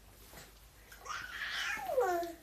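A baby vocalizing: one drawn-out, breathy sound beginning about halfway in, its pitch sliding down at the end.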